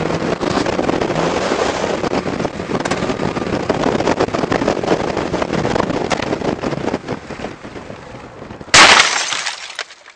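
A vehicle driving on a snowy road, with steady engine and road noise that eases off about seven seconds in. About nine seconds in comes a loud, sudden crash that fades within a second: a collision with an oncoming vehicle.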